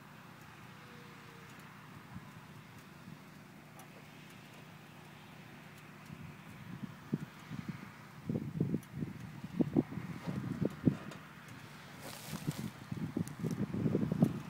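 Wind buffeting an outdoor microphone: a faint steady background, then irregular low gusts starting about halfway in and growing louder, with a brief hiss near the end.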